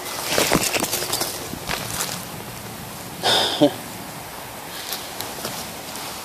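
Rustling and handling knocks as a hand-held phone is swung around, mostly in the first second, then a short spoken "yeah" about three and a half seconds in.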